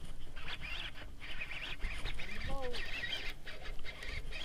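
Baitcasting reel being cranked while a hooked fish is brought in: a steady whirring with many small clicks. About halfway through there is one short rising call.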